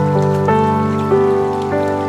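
Slow ambient piano music, new notes sounding about every half second, over a faint steady rush of running water.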